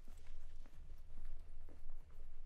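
Footsteps on the ground, a few short knocks about half a second apart, over a steady low rumble.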